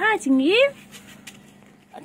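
A cat meowing twice in quick succession in the first second, the second call sliding upward in pitch.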